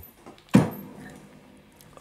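A knock about half a second in as an electric Les Paul guitar is lifted and handled. Its strings ring briefly through the amp and fade away.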